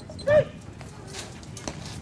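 A short, loud shouted call about a third of a second in, rising and then falling in pitch: a baseball plate umpire calling the pitch. After it comes a low outdoor background with a few faint clicks.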